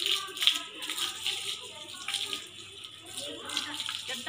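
Water from a garden hose splashing onto a buffalo calf as it is hosed down, with voices over it.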